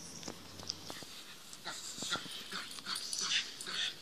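Protection-training dog whining and wheezing in short high-pitched bursts that grow louder and more frequent through the second half. It is the sound of a dog worked up in drive, straining on its leash toward the decoy.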